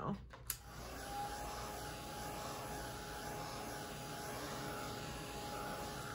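A small electric blower switches on about half a second in and runs steadily: an even rush of air with a faint whine over it.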